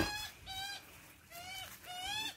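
Juvenile Australian magpie begging its parent for food: four short, same-pitched begging calls in quick succession.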